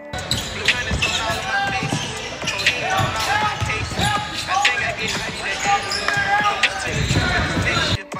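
Live game sound from an indoor basketball court: a basketball being dribbled on the hardwood floor, with sneakers squeaking sharply as players cut, and voices in the gym.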